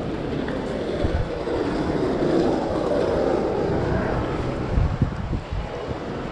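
Outdoor street noise with a passing engine drone that swells and fades over a few seconds in the middle, and a few low thumps on the microphone about a second in and near the end.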